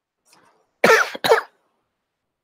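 A man coughs twice in quick succession, after a faint intake of breath.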